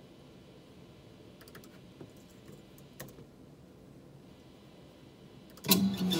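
A few faint, scattered clicks of a computer keyboard and mouse over low room tone. Near the end, loud music starts abruptly.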